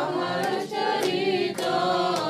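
A group of voices singing a devotional Vaishnava bhajan together, holding long notes in a slow chant-like melody.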